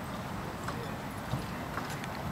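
Footsteps of a color guard marching on turf, over a steady low rumble of open-air stadium ambience with faint distant voices and a few soft knocks.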